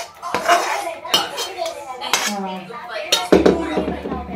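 Metal utensil scraping and knocking against a cooking pan as chopped greens are emptied from it into a steel tray, with several sharp clinks.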